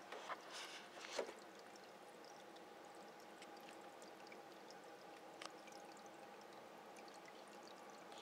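Faint aquarium water sounds: two short splashy bursts in the first second or so, then a quiet steady hum with a few light ticks.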